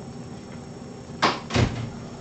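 Two sharp knocks about a third of a second apart, the second heavier and deeper, over steady low room noise.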